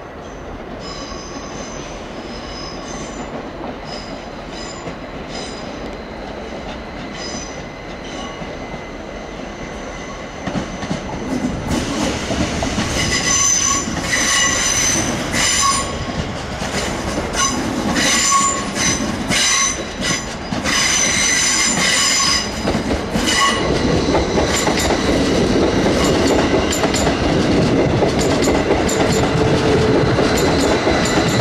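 A train running slowly over curved track: repeated high-pitched wheel squeals that grow louder from about a third of the way in, then a steady rumble of wheels on rail near the end.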